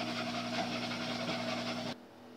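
Water running from a kitchen faucet into the sink, a steady hiss that cuts off suddenly at the end.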